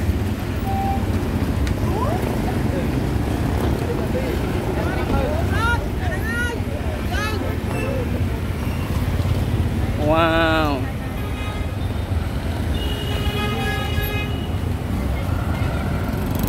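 Busy street traffic, with cars and motorbikes running past and a steady rumble throughout. Nearby voices call out now and then. A vehicle horn sounds one steady note for about a second and a half, late on.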